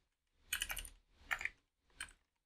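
Computer keyboard typing: two short runs of keystrokes, one about half a second in and another shortly after the one-second mark.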